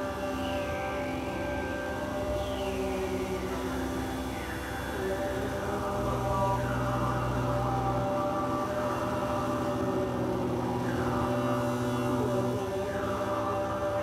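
Live drone music: layered sustained tones, with a low bass drone that comes in about six seconds in and drops out near the end, and short falling swoops repeating on top every couple of seconds.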